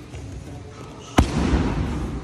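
A single sharp smack of a boxing glove hitting a Thai pad a little past halfway through, the loudest sound here, with a noisy tail after it.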